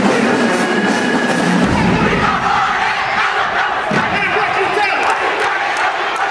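Marching band brass holding a note, cut off about two seconds in by a low drum hit. A crowd of voices then shouts and cheers.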